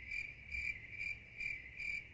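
Cricket-chirp sound effect: a high chirp pulsing steadily about twice a second. It is the stock cue for an awkward silence, in answer to a request for evidence.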